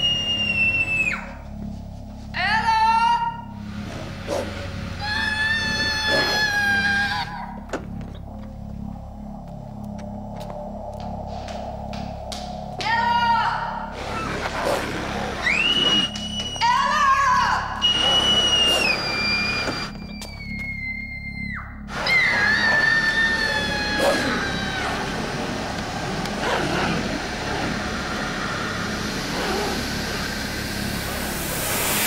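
Suspense music: a low repeating pulse under high held tones that slide slowly downward, with short wavering high-pitched notes cutting in a few times.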